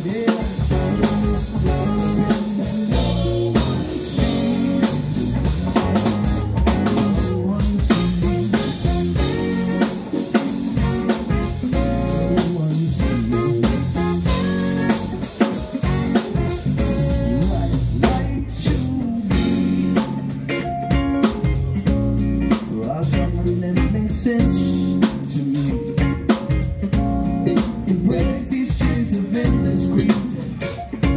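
A live funk band playing: drum kit, bass guitar, electric guitar and Juno-DS synthesizer keyboard, with two saxophones joining in.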